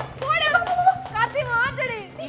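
Shrill, wailing human voices crying out, pitch sliding up and down, over a steady low background tone.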